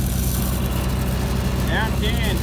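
Engine-driven welding machine running with a steady low drone, under load while a stick-welding root pass is run.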